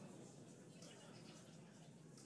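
Near silence with a faint, even hiss.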